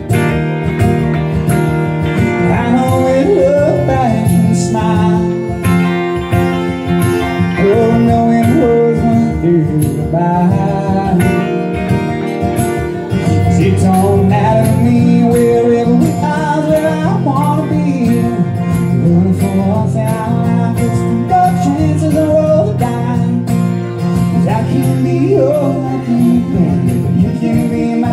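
Live acoustic country music: a fiddle playing sliding melody lines over a steadily strummed acoustic guitar.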